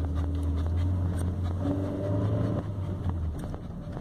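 Car engine and road noise heard inside the cabin, a steady low drone that drops away a little after three seconds in. A faint higher pitched sound rises over it for about a second near the middle.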